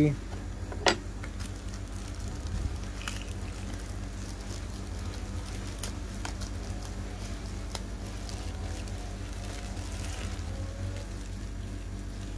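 Plastic packaging handled, with one sharp click about a second in, then a steady low hum with a few faint ticks.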